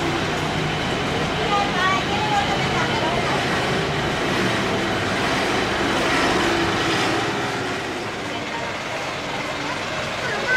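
Busy street ambience: steady traffic noise with scattered voices of passers-by.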